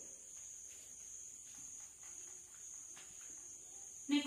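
Chalk writing on a blackboard: a few faint scratches and taps of the chalk strokes, over a steady high-pitched tone in the background.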